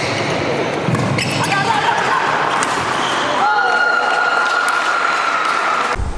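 Badminton doubles rally in a large indoor hall: sharp racket strikes on the shuttlecock at irregular intervals over a reverberant background of voices. About halfway through, a steady high tone starts and holds to the end.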